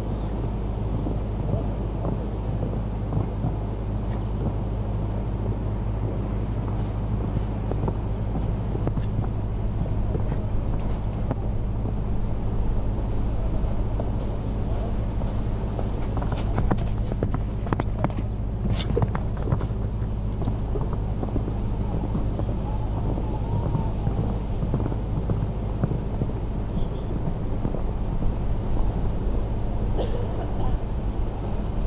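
Outdoor arena ambience: a steady low hum under a murmur of distant voices, with a horse's hoofbeats on the sand faintly heard and a few light knocks in the middle.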